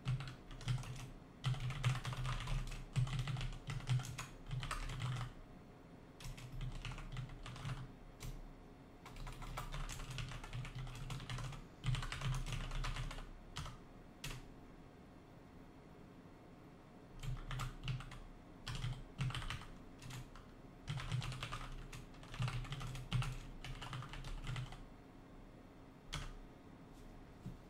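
Typing on a computer keyboard in bursts of keystrokes, with short pauses between them and a longer pause of about three seconds around the middle.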